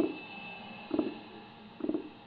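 A slow pulse of low, muffled thuds, about one a second, from the film's added soundtrack, over a faint steady high tone.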